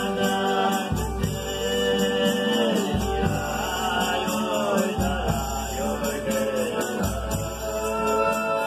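Folia de Reis singers chanting a sung verse together, with accordion and guitar accompaniment; the voices glide between long held notes over a bass that changes about every two seconds.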